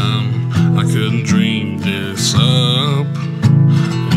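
Acoustic guitar strummed in a steady rhythm under a man's wordless singing, opening a country song.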